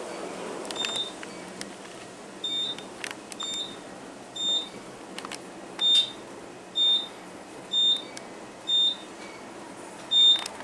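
Otis traction elevator car in motion: a steady low ride noise, with a short high electronic beep from the car sounding about once a second. The beeps start a couple of seconds in and grow louder in the second half.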